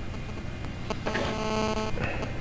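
A G1 phone's vibration motor buzzes steadily for just under a second, starting about a second in, as the phone shuts down. A click comes just before the buzz, and a faint low hum runs underneath.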